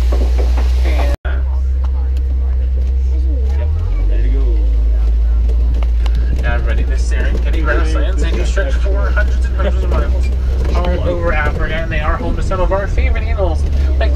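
Steady low rumble of an open-air safari truck driving along, with passengers' voices talking, mostly in the second half. The sound drops out for an instant about a second in.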